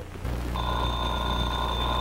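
Telephone ringing: one long steady ring that starts about half a second in, over a low hum in the recording.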